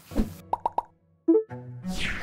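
Edited-in cartoon sound effects: three quick short blips, a pause, then a bloop-like plop, with a music cue starting near the end.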